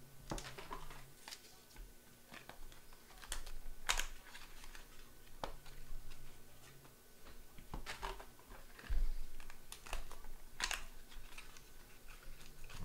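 Hands opening a small cardboard trading-card box and sliding the card out, making scattered irregular clicks, taps and short rustles of cardboard and plastic.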